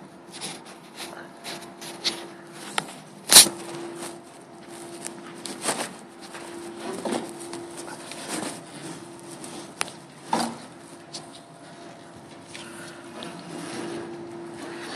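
A run of knocks, clatters and scuffs, the loudest about three and a half seconds in, as someone climbs the metal steps and grab handle up into a wheel loader's cab, with a steady low hum underneath.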